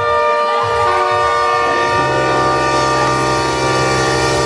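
Salsa band's brass section holding a long sustained chord, with notes added one after another and a low note coming in about halfway through.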